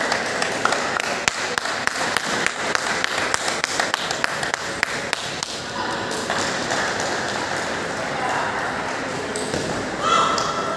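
Table tennis balls clicking off paddles and tables from several matches at once, in an irregular patter that is dense for the first half and thins out later.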